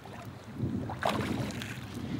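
Water sloshing and splashing at the churned surface of a fish pond, over a low rumble, with a louder splash about a second in.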